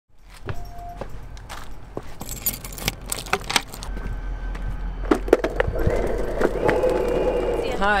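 An electric skateboard being carried by its handle while walking on pavement, with scattered clicks and knocks. A noisy hum builds from about five seconds in.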